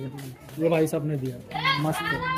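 People's voices, pitched and drawn out, with no clear words, and one voice rising sharply near the end.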